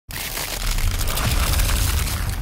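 Intro sound effect of ground cracking and breaking up: dense crackling and crunching debris over a deep rumble, starting suddenly.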